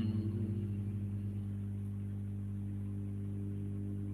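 A steady low electrical hum with several even overtones, the kind of mains hum a microphone picks up. It wavers faintly for about the first second.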